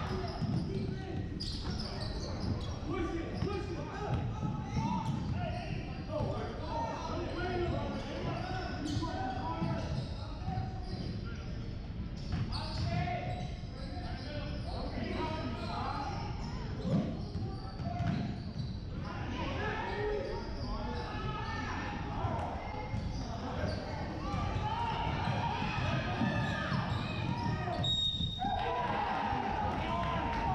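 Basketball being dribbled on a hardwood gym floor during play, with players' and spectators' voices echoing in the large hall. A short, high referee's whistle sounds near the end.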